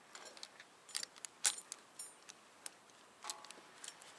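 Rigging chain and metal hooks clinking and jingling as they are handled, in scattered short clinks with the loudest about one and a half seconds in.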